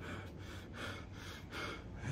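A man breathing quickly and softly through a pause in speech, about two breaths a second, over a faint steady low hum.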